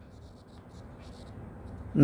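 Stylus writing on a tablet screen: faint, short scratching strokes in two groups as a number is written out.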